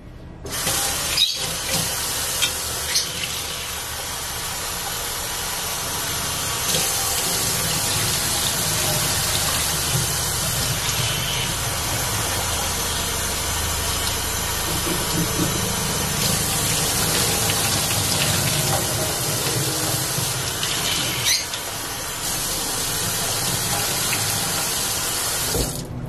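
Kitchen faucet running into a stainless steel saucepan as canned red beans are rinsed in it, a steady rush of water filling and swirling in the pot. The water starts about half a second in and stops just before the end, with a few knocks of the metal pot in the first few seconds.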